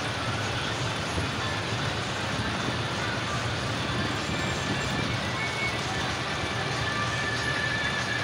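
Tractor engines running steadily as a line of tractors drives slowly past, with a low, even rumble and voices mixed in.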